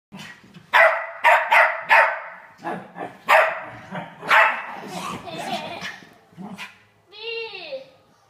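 A dog barking repeatedly: a string of sharp barks, several in quick succession, loudest in the first four and a half seconds, then fewer and fainter.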